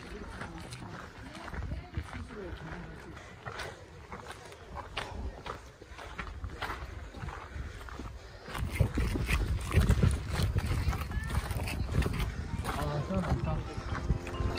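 Footsteps on stone trail steps with the chatter of other hikers in the background. About eight seconds in, wind starts rumbling on the microphone.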